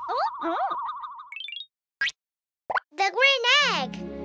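Cartoon sound effects and wordless character vocalising. A wavering tone runs under gliding squeaky voice sounds, then comes a quick rising chirp and two short blips. Near the end a high voice bends up and down.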